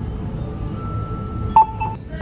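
Ticket vending machine giving two short electronic beeps near the end, as the ticket is issued.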